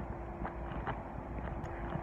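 Street ambience: a steady low rumble of distant traffic with a faint steady hum and a few faint ticks.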